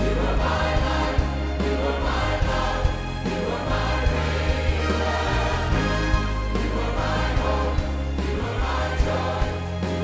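Live church worship music: a choir singing with a band and orchestra, a woman singing lead into a handheld microphone, over a steady bass line.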